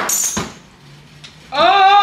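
A hard plastic clack as the Ninja Creami ice-cream maker is handled on the counter. Then, about one and a half seconds in, a woman gives a long, loud held "ooh" of excitement.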